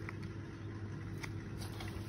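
Faint rustling and a few soft clicks of damp compost bedding and cardboard as a hand digs through a worm bin, over a steady low background hum.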